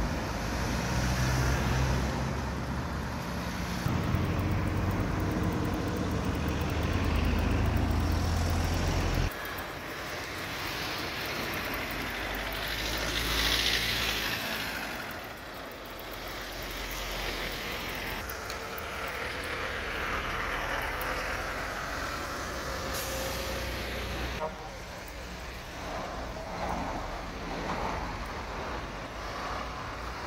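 Roadside traffic noise. A heavy engine rumbles close by for the first nine seconds, then vehicles pass with a hiss that swells and fades about 13 to 14 seconds in. The sound changes abruptly twice, at about 9 and 24 seconds.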